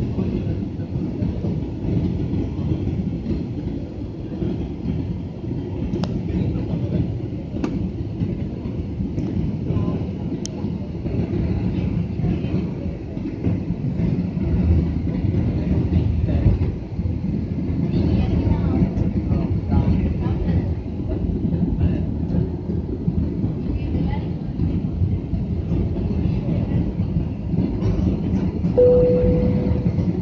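Jet airliner cabin noise during descent: the steady low rumble of the engines and airflow heard from a window seat. A brief steady tone sounds near the end.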